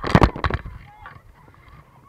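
A quick run of loud knocks and crackles as the action camera tumbles and bumps against the raft in rough water, dying away after about half a second into quieter rushing noise.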